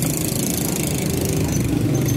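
A small engine idling steadily close by, with plastic bag crinkling over it in the first second.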